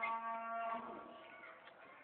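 A cow mooing: one long call that drops in pitch and ends about a second in.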